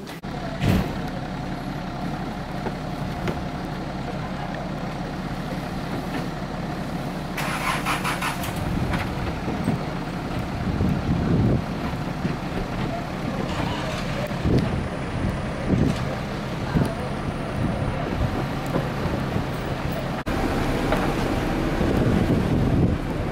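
A bus's diesel engine idling with a steady low hum. A short burst of hiss comes about seven and a half seconds in.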